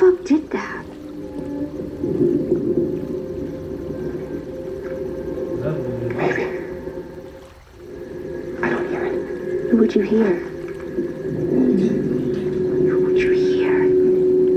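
A TV drama's soundtrack playing in a room: low, sustained droning tones with sharper sounds breaking in now and then. It fades down briefly about halfway through and then comes back.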